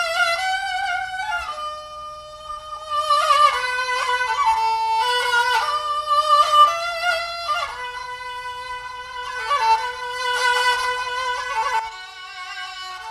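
Solo bowed spike fiddle playing a slow melody of held notes with vibrato, moving between notes with sliding changes of pitch.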